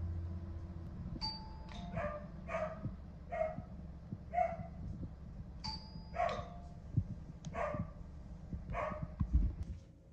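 A two-tone ding-dong doorbell chime rung twice, about a second in and again near the middle, with a border collie barking about ten times in reply to it, fairly quietly.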